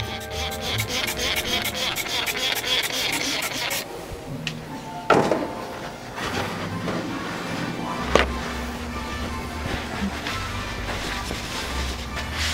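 Background music with a quick, even ticking beat for the first four seconds, then a steadier, quieter stretch with a couple of single knocks.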